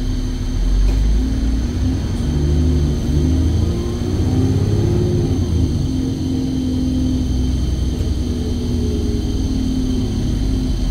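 Alexander Dennis Enviro 400 double-decker bus engine and gearbox heard from inside the lower-deck cabin, pulling hard under acceleration. The pitch climbs, drops with a gear change about five to six seconds in, then holds steady.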